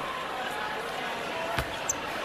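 Arena crowd chatter, with one sharp thud of a basketball bouncing on the hardwood court about a second and a half in.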